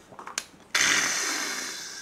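A man's loud breathy exhale close to the microphone right after a swallow of makgeolli, starting suddenly about three-quarters of a second in and fading over about a second, after a few faint clicks.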